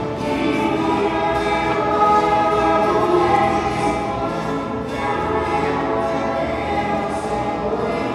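Group of violas caipiras (ten-string Brazilian folk guitars) strumming and picking a pagode rhythm, with young voices singing together over them.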